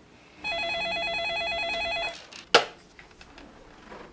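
Landline telephone ringing once with a fast electronic warbling trill lasting about a second and a half, followed by a short sharp knock about two and a half seconds in.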